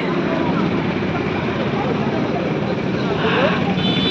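Steady road traffic noise, an even rush of vehicles passing by without a break.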